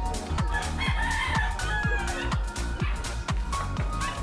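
A rooster crowing, one long call about a second in, over background music with a steady beat.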